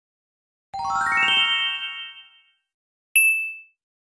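Chime sound effect: a quick rising run of bell-like notes that rings out, then a single short bright ding about three seconds in.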